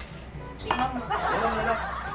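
A glass bottle clinks once against a wine glass about two-thirds of a second in, followed by liquid gurgling as it pours into the glass.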